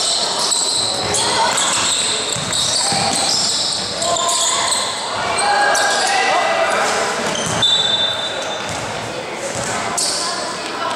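Basketball game in a large, echoing gym: sneakers squeaking on the court, the ball bouncing, and players and spectators calling out. A short high whistle blast, most likely the referee's, comes about eight seconds in.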